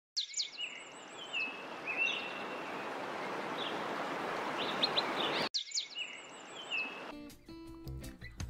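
Birds chirping over a rushing noise that swells slowly, all cut off abruptly about five and a half seconds in. The chirps start again, and music with low notes comes in near the end.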